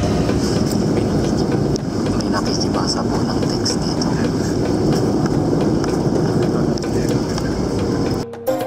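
Steady jet airliner cabin noise: the low, even roar of engines and airflow heard from inside the passenger cabin, with faint voices under it.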